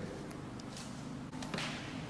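Faint handling sounds of a welding-wire spool being fitted on a wire feeder, over a low steady background, with a brief swish about one and a half seconds in.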